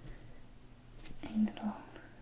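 Fingers handling a stiff paper card and a small folded paper booklet, with a few faint light taps, and a short soft whispered murmur about a second and a half in.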